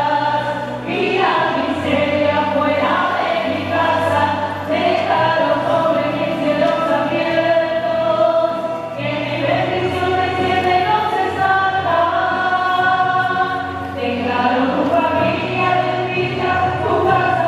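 Choir singing a slow hymn in long held chords that change every few seconds.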